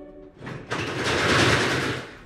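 A slatted window roller shutter being lowered, its slats rattling down for about a second and a half.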